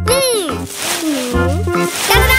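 Children's cartoon background music under a wordless cartoon voice that swoops down in pitch and back up, with a brief hissing whoosh in the middle.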